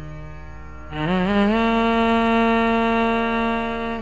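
Ten-string double violin playing a slow phrase of raga Abheri in Carnatic style. A held note dies away, then about a second in a new low note slides up into place and is held steady.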